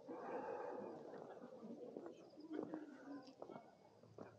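Birds calling, with low cooing notes near the middle, over faint voices of passers-by.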